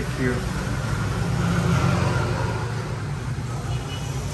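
Road traffic passing on the street: the low engine rumble of a motor vehicle swells about midway, then eases.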